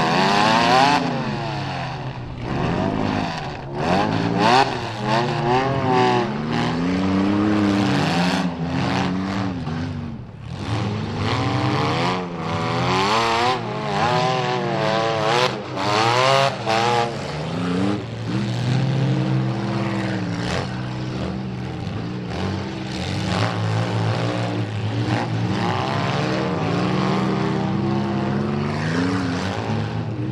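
Several demolition derby cars' engines revving hard at once, their pitches rising and falling over one another as the cars drive and ram, with now and then a sharp bang of cars hitting.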